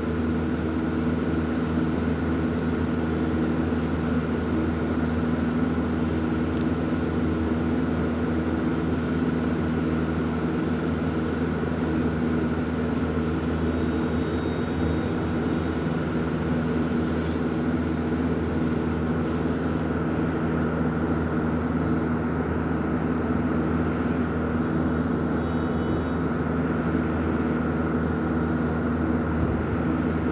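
A steady, loud droning hum made of several constant low tones that never changes pitch or level, with one brief high click a little past halfway through.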